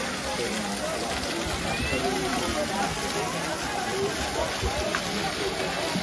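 Ornamental fountain jets splashing into a stone pool: a steady rush of falling water, with a crowd chattering around it.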